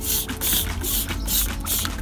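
Hand trigger spray bottle squirting degreaser onto a bicycle frame: a rapid series of short hissing sprays, several in a row, about two to three a second.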